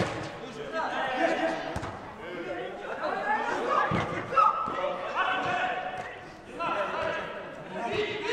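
Footballers shouting to each other in a large, echoing indoor hall, with a ball being kicked about two and four seconds in, each kick a short thud.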